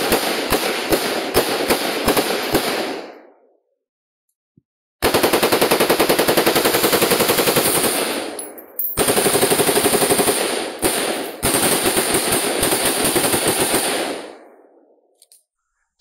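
Automatic gunfire: a run of single shots about two to three a second that fades out around three seconds in, then after a short silence long rapid bursts broken by brief pauses, dying away near the end.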